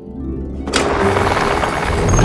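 Cartoon helicopter rotor noise swelling up about half a second in and staying loud as the helicopter comes down to land, over light background music.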